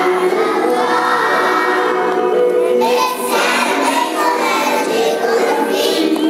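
Children's choir singing together, holding long notes, with a change of phrase about three seconds in.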